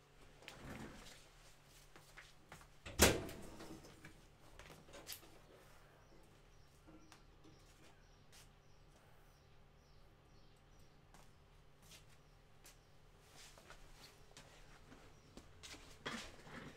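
A door being opened: one sharp knock about three seconds in, with a few fainter clicks and knocks around it. Scattered light taps follow over a steady low room hum.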